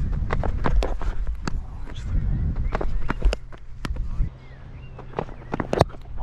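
Low rumble of movement on a body-worn action camera's microphone that drops away about four seconds in, with scattered sharp clicks and knocks throughout.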